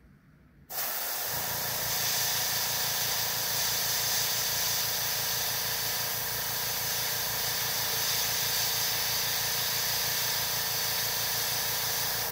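Iwata gravity-feed airbrush spraying with a steady hiss of compressed air that starts suddenly about a second in. A low, evenly pulsing hum runs underneath it.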